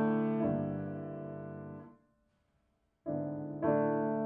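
Grand piano played slowly. A chord struck just after the start rings and fades, the sound is cut off about two seconds in, and after a second of silence new chords begin.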